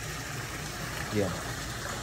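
Swimming-pool water churning and splashing as a swimmer kicks and pulls through it, a steady rushing wash.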